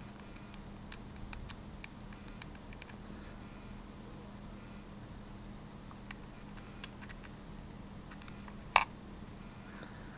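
Faint small clicks and rubbing as the plastic rotor of a homemade pulse motor is handled and seated back on its needle bearing, with one sharp click near the end, over a low steady hum.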